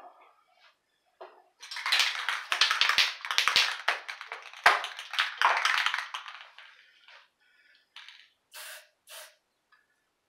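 Several seconds of rough, rustling noise with three light knocks in it, then two short hisses close together near the end.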